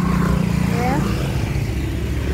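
A motorcycle passing close by, its engine hum strongest in the first second and then dropping away.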